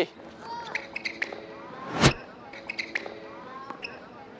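A tennis racket striking the ball once, hard, about two seconds in, on a forehand drive volley, with a few faint ticks before and after it.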